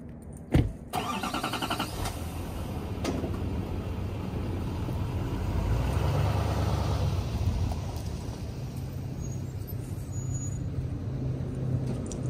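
A pickup truck's door shuts with a single loud thud, then the engine cranks for about a second and starts. It runs steadily, growing louder around the middle as the truck pulls away, then eases off.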